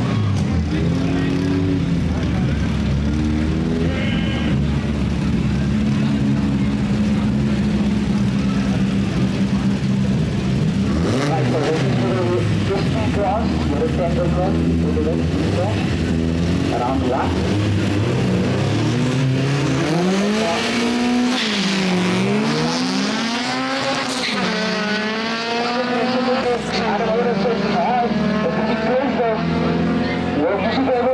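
Drag-racing car engines running at the start line, revved up and down several times, then rising steadily in pitch near the end as a car accelerates away down the strip.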